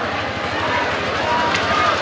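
Crowd of people talking and calling out over one another, a steady babble with no single voice standing out, and a brief sharp click or squeak about a second and a half in.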